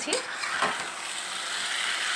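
Small whole potatoes frying in oil and masala in a wok, sizzling steadily while a metal spatula stirs through them.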